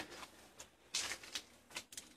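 A few brief, soft rustles and scuffs from a handheld camera being moved about and pointed down at the bumper frame.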